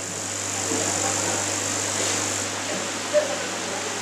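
Steady low electrical hum from a live microphone and sound system, under an even noisy rush. There is a single short knock about three seconds in.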